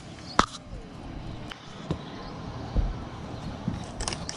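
Handling noises at a table: one sharp click about half a second in, then a few soft taps and a low thump.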